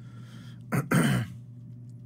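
A man clearing his throat once, a short rasp and a brief voiced burst about a second in.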